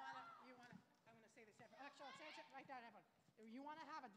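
Faint, indistinct voices talking, too quiet and distant to make out words.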